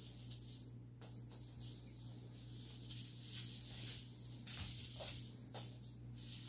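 A plastic hula hoop spinning fast around a child, giving faint, repeated swishes and rattles about every half second, over a steady low hum.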